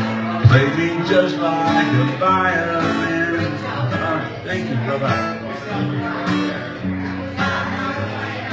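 Acoustic guitar strummed and picked, with chords ringing on, as live song accompaniment.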